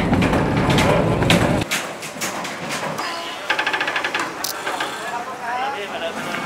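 Knocks and clatter of equipment cases being carried aboard a ferry over a metal gangway, amid people talking. A loud low rumble fills the first second and a half, and a quick rattle comes about halfway through.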